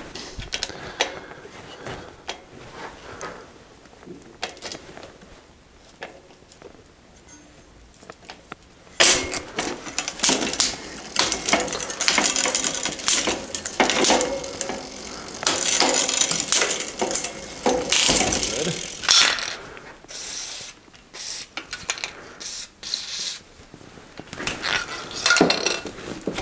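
Bicycle drivetrain worked by hand in a repair stand: the chain runs over the chainrings, rear derailleur and freewheel as the crank is turned, with mechanical clicking and ratcheting. It is quiet handling clicks at first, then from about nine seconds in the chain runs loudly in long stretches.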